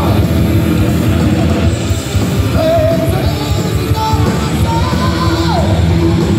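Heavy metal band playing live and loud: distorted electric guitars, bass and drums with a singer's voice. About half way through a held note wavers, and a higher held note slides down shortly before the end.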